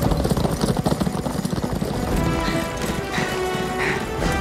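Horses galloping, a dense run of rapid hoofbeats, under a film score whose music grows stronger in the second half.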